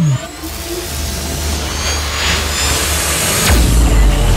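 Cinematic sound-effect sting from an animated outro. A downward-swooping tone finishes as it begins, then a dense whooshing wash runs over a deep rumble, with a second swoosh and heavier low boom about three and a half seconds in.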